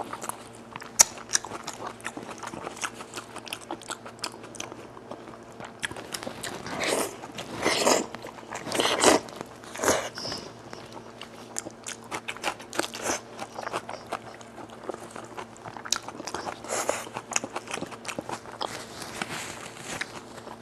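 Close-miked eating of spiced goat-head meat: wet chewing and biting with many small mouth clicks, and a few louder bursts about seven to ten seconds in.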